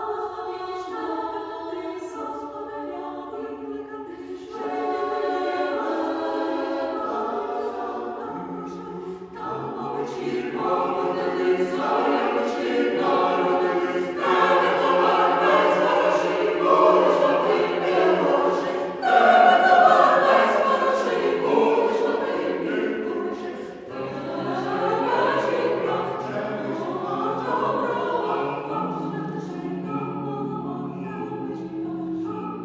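Choir singing a Ukrainian Christmas carol (koliadka). Higher voices carry the opening, lower voices join about a third of the way in, and the singing swells louder through the middle.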